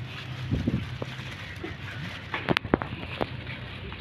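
Thin plastic carrier bag crinkling as it is handled and opened, with a few sharp crackles in the second half.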